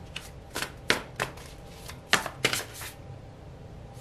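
Tarot cards handled in the hands: a scattered series of short card clicks and slides as cards are sorted through and drawn from the deck, the loudest a little after two seconds in.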